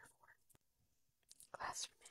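Quiet whispered speech from a woman, a couple of brief faint phrases with near silence between.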